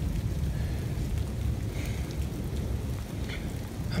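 Rain falling steadily in a storm, with a steady low rumble underneath.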